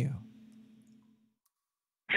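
A man's spoken word ends, leaving a faint steady low hum from the microphone line, which cuts off abruptly into dead silence about a second in, with a brief faint beep as it cuts.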